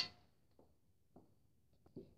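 Near silence: room tone, with a few faint, short soft clicks.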